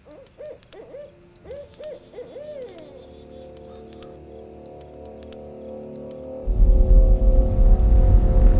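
An owl hooting in a quick series of short calls over the first few seconds, followed by a steady sustained drone that swells into a loud low rumble about six and a half seconds in.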